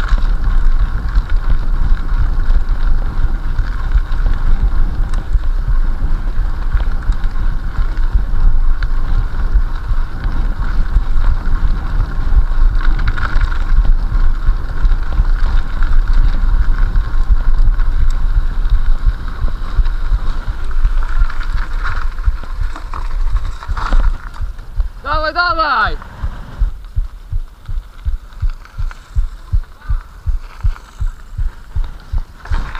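Mountain bike riding a rough, frozen, snowy forest track, with heavy wind buffeting on the handlebar camera's microphone and the rattle of the bike. About 25 seconds in, a short pitched sound slides quickly downward, and the ride noise then gives way to a quieter regular thumping of about two beats a second.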